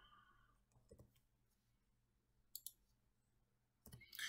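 Near silence broken by a few faint clicks from a computer keyboard and mouse: one about a second in, then two close together about two and a half seconds in.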